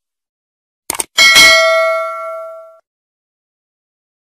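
Subscribe-button animation sound effect: a quick double mouse click about a second in, then a bell-like ding that rings out and fades away over about a second and a half.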